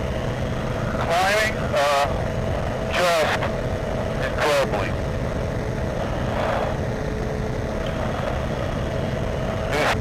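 Ultralight trike's engine running steadily at climb power, a constant drone with fixed tones. Short bursts of a voice cut in several times over it.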